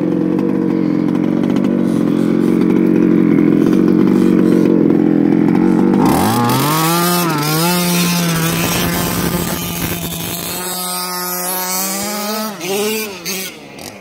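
Small two-stroke gas engine of a 1/5-scale Baja RC truck running loud and steady at high revs, then revved up and down repeatedly from about six seconds in, falling quieter near the end.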